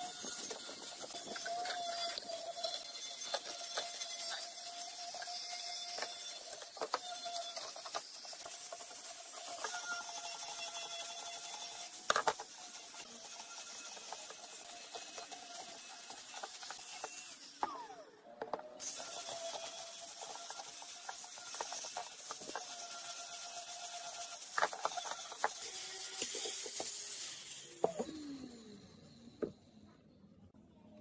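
Electric angle grinder with an abrasive disc running against steel motorcycle parts, the exhaust silencer and then tubular parts, with a steady motor whine and scattered ticks as the disc skips on the metal. Just past halfway it winds down, stops briefly and starts again, and it winds down once more near the end.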